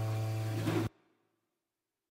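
Acoustic guitar music ending: a held chord rings and slowly fades, then cuts off abruptly about a second in.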